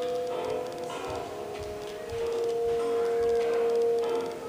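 Instrumental film-score music with long held notes, the main note settling slightly lower about halfway through, playing from a small CRT television's speaker.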